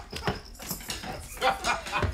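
Several people laughing and chattering, over a few scattered sharp clicks and taps. The voices grow louder near the end.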